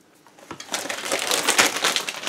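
Crisps being chewed close to the microphone: a dense, crackly crunching that starts about half a second in and grows louder toward the end.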